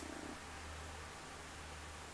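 Faint steady low hum over a light hiss: background room noise.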